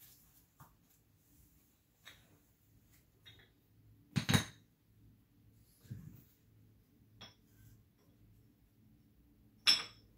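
Hard plastic counterweight slabs of a scale-model crane clacking as they are stacked by hand onto the ballast: a few light knocks and two loud clacks, one about four seconds in and one near the end.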